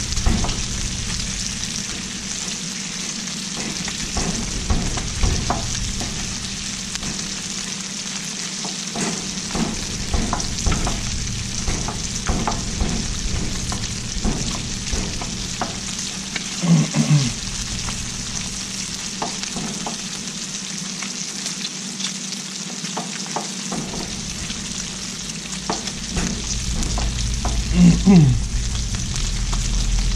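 Chorizo and beans frying and sizzling steadily on a Blackstone steel flat-top griddle, with scattered knocks and scrapes of a metal masher pressing the food against the plate. Two brief louder falling sounds stand out, one about midway and one near the end.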